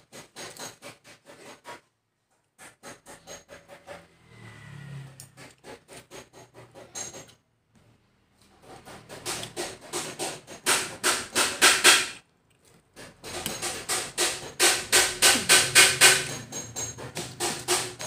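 Metal fork and spoon clicking and scraping against a large plastic bowl as rice and chicken are mixed and scooped. The clicks come in quick, uneven runs and grow loud and dense in the second half.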